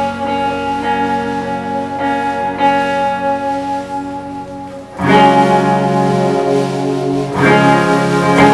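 A live indie rock band playing an instrumental passage with ringing electric guitars; the sound thins and drops a little, then the band comes back in louder and fuller about five seconds in.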